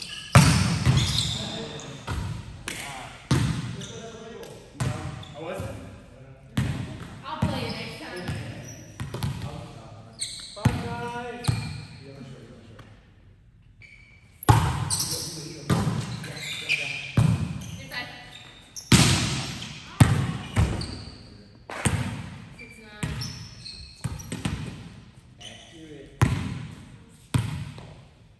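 A volleyball being struck and bouncing off hands and the gym floor in rallies: repeated sharp slaps that echo around the hall, with players' voices. The play goes quiet for about two seconds near the middle, then the hits resume.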